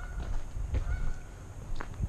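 A bird calling with a few short high notes, near the start and again about a second in, over a low rumble of wind and handling noise on the microphone.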